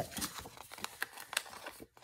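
A large sheet of decorative paper being handled and slid across a craft table: soft paper rustling with an irregular scatter of small sharp clicks and taps.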